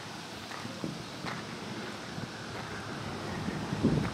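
Faint outdoor background noise, a low even hiss of light wind on the microphone.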